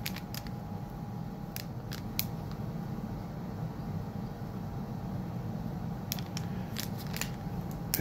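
A pin card in a clear plastic sleeve being handled, giving a few scattered short clicks and crinkles over a steady background hum.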